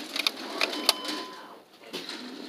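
Sharp plastic clicks and taps as a small makeup product is picked off a store display and handled, the loudest a little under a second in, with a faint steady tone for about half a second in the middle.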